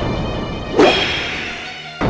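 A trailer swoosh transition effect: a sudden whip-like whoosh about a second in that then fades away.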